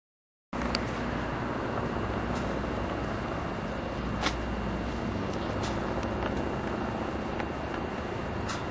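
Helicopter flying overhead, a steady low drone with a few faint clicks.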